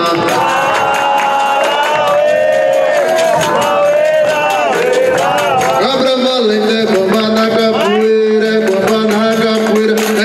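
Capoeira roda music: voices singing a chant over percussion from a hand drum and pandeiro, with a berimbau.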